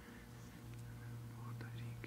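Faint, indistinct whispered voices over a steady low hum in a quiet room.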